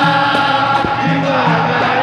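Capoeira roda music: a group singing the chorus together, accompanied by berimbaus, an atabaque drum and hand clapping.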